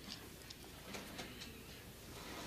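Quiet room tone with a few faint, irregular light ticks.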